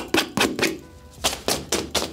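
A small pocket knife blade scraping in quick, rough strokes across the nylon shell fabric of quilted puffer pants, a scratch test of how well the fabric resists tearing. There are about eight strokes in two seconds, and a short faint steady tone sounds about halfway through.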